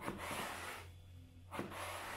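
A kitchen knife slicing lengthwise through a whole eggplant on a wooden cutting board: two drawn cuts about a second and a half apart, each starting sharply as the blade meets the board.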